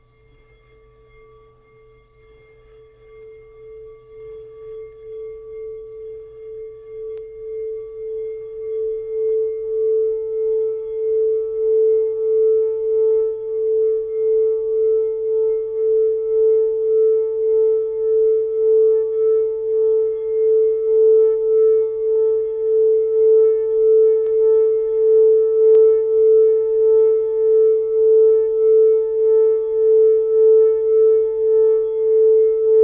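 Frosted quartz crystal singing bowl sung by circling a mallet around its rim: one steady hum that builds from faint to loud over about the first ten seconds, higher overtones joining as it swells, then holds with a slow, regular wavering.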